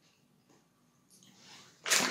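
A woman sneezing: a short rising intake of breath, then a loud, sudden burst near the end.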